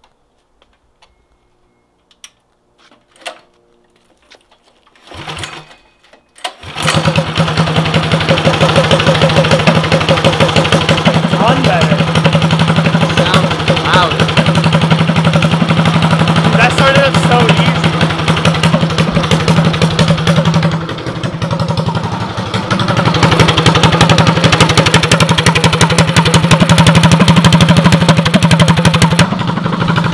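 Predator 212cc single-cylinder four-stroke go-kart engine, fitted with aftermarket intake and exhaust and a freshly changed spark plug, pull-started and catching quickly about six seconds in. It then runs steadily and smoothly, its sound dipping briefly about twenty seconds in.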